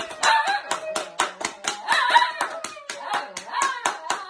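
Two people clapping their hands quickly and unevenly, about five claps a second.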